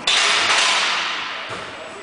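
A sudden thud as a loaded barbell is driven up off a squat box, followed by loud noise that fades over about a second and a half, with a smaller knock near the end.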